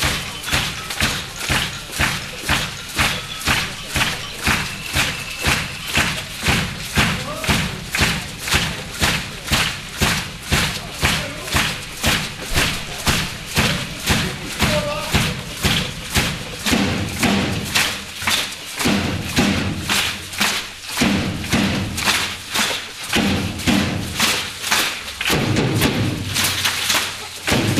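Solo drum kit played live: a steady pulse of loud strokes about twice a second. From about two-thirds of the way in, deeper tom or bass-drum hits join the beat.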